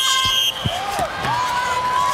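Electronic start buzzer sounding one steady high tone that cuts off about half a second in, the signal to begin a timed passing event. A dull thump and background voices follow.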